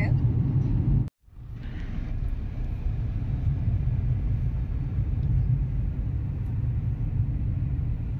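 Steady low road and engine rumble inside a moving car's cabin, cut off briefly about a second in, then fading back in and running on evenly.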